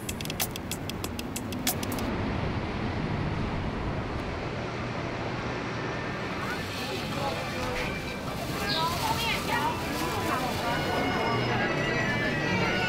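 Street ambience with a steady wash of traffic noise. A rapid run of sharp clicks, several a second, plays in the first two seconds. Indistinct voices of passers-by come in from about halfway through.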